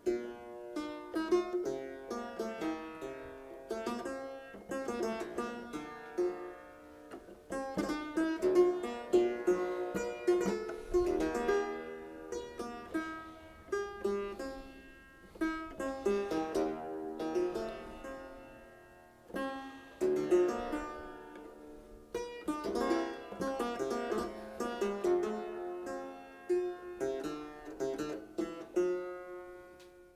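Triple-fretted clavichord, a copy of a Leipzig instrument of about 1700, playing a slow multi-voiced piece in phrases, the sound dying away briefly between them. The last note fades out at the end.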